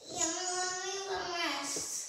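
A child's voice holding one long, high note for about a second and a half, dipping slightly in pitch at the end.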